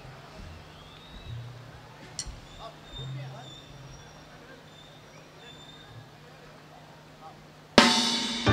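Lull between songs at a live rock concert: a steady low hum from the stage PA under faint crowd voices. Near the end the band comes in suddenly and loudly on a drum and cymbal hit.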